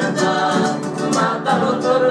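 Male voices singing a Cuyo tonada over several acoustic guitars strummed together in a steady rhythm.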